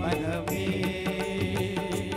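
Live band playing a Tamil film song on electronic keyboards with percussion, sustained chords over a steady beat of about four strokes a second.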